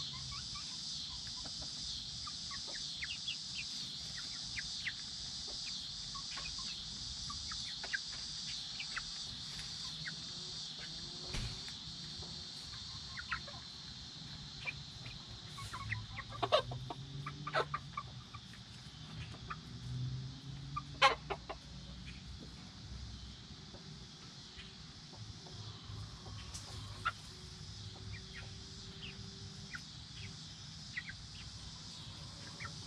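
Silkie chickens clucking and peeping in short, scattered calls as they peck at feed, with a cluster of louder calls around the middle. A steady, pulsing high insect drone runs underneath and fades about halfway through.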